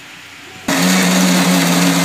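Electric mixer grinder switching on about two-thirds of a second in and running steadily at full speed, a loud whirr over a steady motor hum, grinding a jar of sautéed onion, tomato, garlic, red chillies and coriander into paste.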